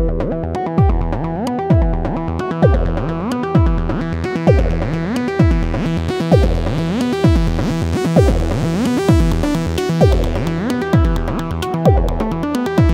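Acid techno track: a squelchy 303 synth line over a steady four-on-the-floor drum beat with ticking hi-hats, the synth's filter opening and closing in sweeps.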